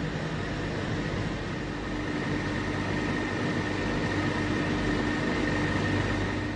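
Steam hissing steadily from a leak among the pipework and pumps of a coal-fired power station, over plant machinery running with a constant two-tone hum. It is the steam leak that forced the generating unit to shut down.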